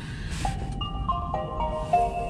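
Nissan Leaf's power-on chime as the car is switched on: a short melody of bell-like notes that starts about half a second in and is still ringing at the end.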